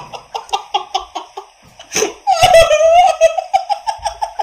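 A man laughing hard, a quick high-pitched ha-ha-ha. It dies down about a second and a half in, then breaks out again louder about two seconds in.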